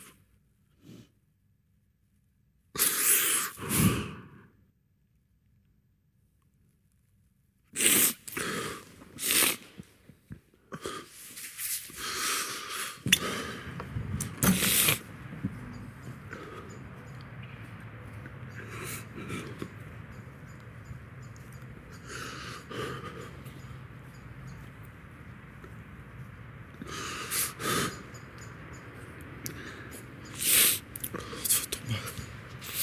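Short bursts of sniffing and heavy sighing breaths from a woman, separated by near silence. From about halfway through, a steady low background noise runs under a few more of these bursts.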